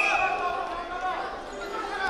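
Wrestlers' feet and bodies thudding on the mat during hand-fighting, under loud shouting from coaches and spectators echoing in a large sports hall.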